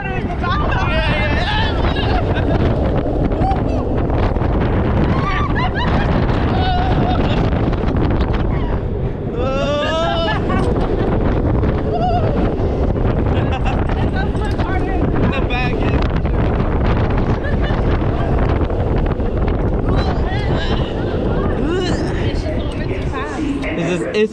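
Roller coaster ride heard from a front-row seat: heavy wind buffeting the microphone and the rush of the train, with riders screaming and yelling over it, one rising scream about ten seconds in.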